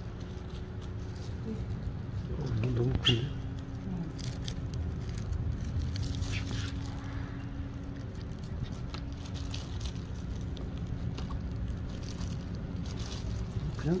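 Faint rustling and scattered small clicks of a plastic-gloved hand pulling oyster mushrooms from a basket of sawdust substrate, over a steady low background hum. A short voice-like sound comes about three seconds in.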